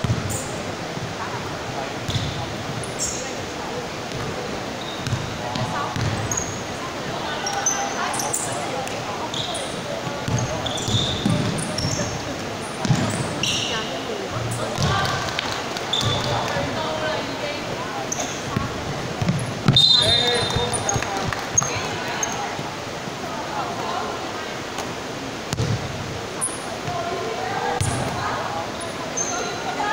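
A basketball bouncing and being dribbled on an indoor court floor, with irregular low thumps throughout, short high sneaker squeaks, and players' voices echoing in the hall.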